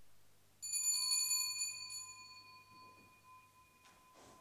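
A small bell rung about half a second in, its high ringing tones fading over a couple of seconds while one lower tone lingers faintly.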